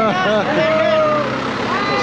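A truck's engine running as it passes close by, under loud voices of people calling and singing.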